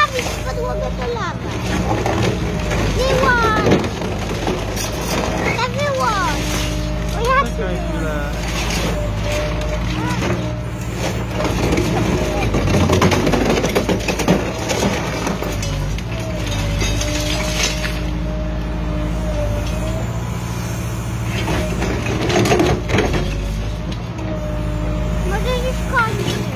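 Excavator diesel engine and hydraulics running steadily while a Trevi Benne MK 20 multiprocessor's jaws crush concrete, with bouts of cracking and crunching as the concrete breaks, heaviest about halfway through and again near the end.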